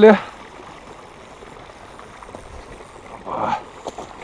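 A man's voice breaks off just after the start. Then there is a steady, faint outdoor background hiss, with a short vocal sound about three seconds in.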